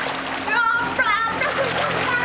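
Water splashing as children play in an inflatable paddling pool, with a child's high-pitched voice calling out twice in quick succession about half a second to a second in.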